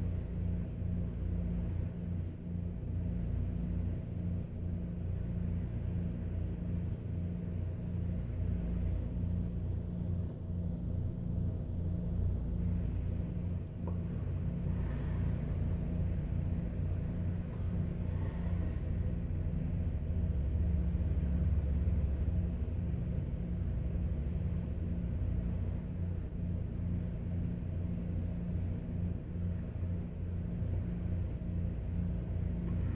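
A steady low machine-like hum with a fast, even flutter underneath, swelling a little for a couple of seconds about two-thirds of the way through.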